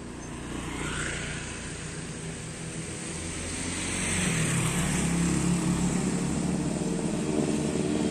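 Street traffic with motorbike engines passing close by. A low engine hum swells and grows louder from about halfway through.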